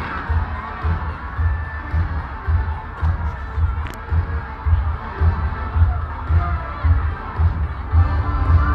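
Crowd noise with many voices and children shouting over a deep, steady beat of about two low thumps a second.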